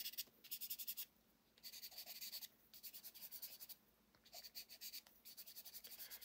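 Black chalk pastel pencil shading on watercolour card: faint scratchy strokes in about six short bursts of a second or less, with brief pauses between them.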